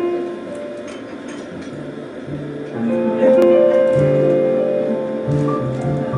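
Live jazz combo playing an instrumental intro: low upright bass notes under sustained keyboard chords. It starts sparse and fills out and grows louder about three seconds in.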